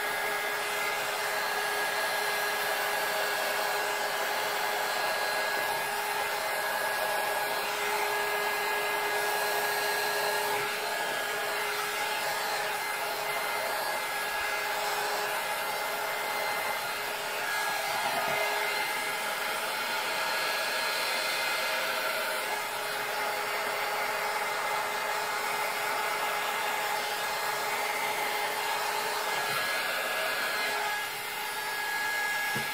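Handheld heat gun running steadily: blown-air rush with a constant motor whine, aimed at wet epoxy resin to push the white pigment into frothy wave lacing.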